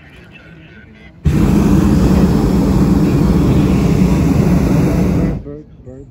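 Hot-air balloon's propane burner firing overhead: a loud, steady roar that starts abruptly about a second in, holds for about four seconds, and cuts off sharply near the end.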